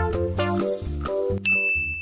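Cartoonish background music, then about one and a half seconds in a single bright 'ding' sound effect, the lightbulb-idea cue, ringing on one steady high note for about half a second as the music drops out.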